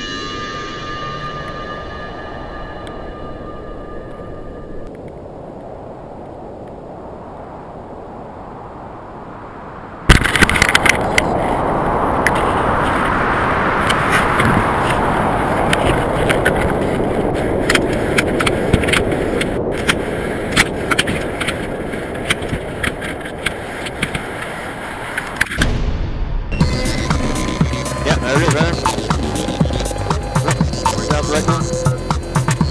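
Loud rushing wind buffeting the camera rig of a payload falling from near-space, starting suddenly about a third of the way in with crackling gusts throughout. Before it, only faint, thin background sound with a few steady tones.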